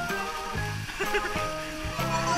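Background music of steady held notes, with the low notes changing about every half second, and a brief voice about a second in.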